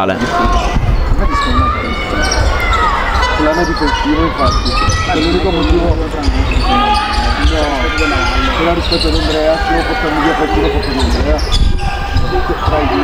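Basketball game sound: the ball bouncing as it is dribbled on the hardwood court, under many overlapping shouting voices of players and crowd in the sports hall.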